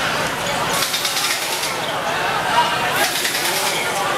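Several voices of players and onlookers shouting and chattering around a five-a-side football game, with short bursts of hiss about a second in and again near three seconds.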